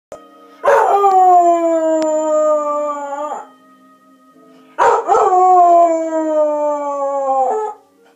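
Cocker spaniel howling along to a TV theme tune: two long howls of about three seconds each, both starting high and sliding slowly down in pitch. The theme music plays faintly underneath.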